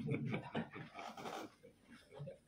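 People laughing in short breathy bursts, dying away about a second and a half in.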